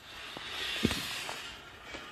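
Steady outdoor hiss with a few faint light clicks as a steel pasture gate is handled and swung open.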